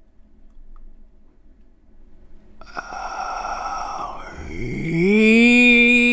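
Added sound effect over slow-motion footage: after a quiet start, a swish comes in under three seconds in, then a low droning tone with many overtones that rises in pitch and then holds steady and loud.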